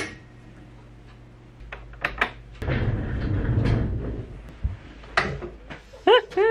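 Closet handling sounds: a click as a wire hanger goes onto the closet rod, two light knocks about two seconds in, then about two seconds of rustling, sliding noise, and a sharp click near the end, like a door latch.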